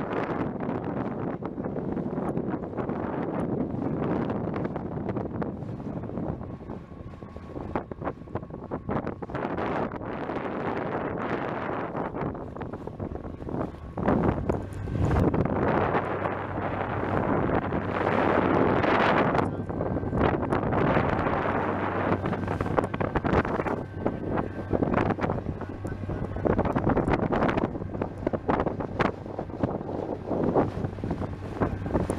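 Wind buffeting the microphone over the rush and splash of water along the hull of a small wooden boat under way. The noise swells and falls in gusts, and a steady low hum joins about halfway through.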